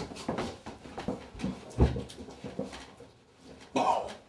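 A scuffle as a man is forced into a small wooden room: shuffling and knocks, strained grunts and whimpers, and a heavy thump a little under two seconds in.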